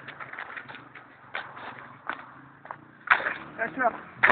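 Faint clicks and rattles of a battered bicycle being moved over tarmac, then a loud burst of voices and laughter near the end.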